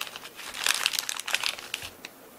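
Small plastic bag of cleat bolts crinkling as it is handled and opened, a quick run of crackles that dies away near the end.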